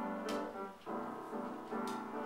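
Piano accompaniment playing sustained chords, with a new chord struck about every second.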